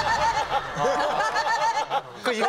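Several people laughing hard together, a quick, steady run of "ha-ha" sounds at about five or six a second.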